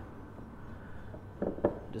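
Hands working a shaggy flour-and-egg noodle dough in a glass mixing bowl: faint soft squishing and rustling, with a couple of brief, slightly louder sounds about one and a half seconds in.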